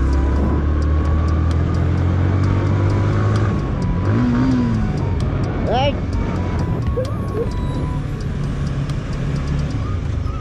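Yamaha motorcycle engine running under way on a dirt road, its low steady note shifting a little after about three seconds as the bike is ridden and then slowed. A few short gliding voice-like sounds come in over it around the middle.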